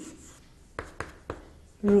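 Chalk writing on a chalkboard: faint scratching with three sharp taps of the chalk about a second in. A woman's voice comes back just before the end.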